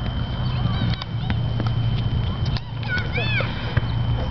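Outdoor ambience with a steady low hum and scattered light clicks. A distant voice calls out briefly about three seconds in.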